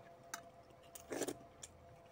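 Fingers picking through curry in a stainless steel bowl: a few light clicks of nails on the metal, with one louder clink and squelch about a second in.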